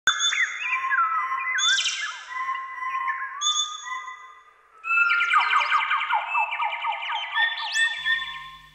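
Overlapping birdsong: several birds whistling and chirping over one another, with a fast repeating trill from about five seconds in.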